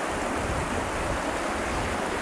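Steady rushing of flowing creek water.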